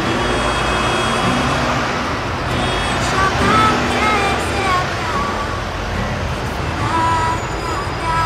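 A woman sings to her own steel-string acoustic guitar, over a steady rush of road traffic.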